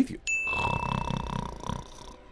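A single bright bell ding, the sin-counter chime marking another sin, about a quarter second in. It rings on over faint low rumbling and a steady hum from the film soundtrack, which fade out near the end.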